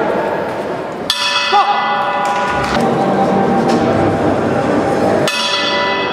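Boxing ring bell struck twice, about four seconds apart, each strike ringing on and fading over the murmur of the hall crowd.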